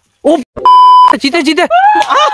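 A short, loud, steady beep tone, about half a second long, starting and stopping abruptly between spoken words: a censor bleep edited over speech.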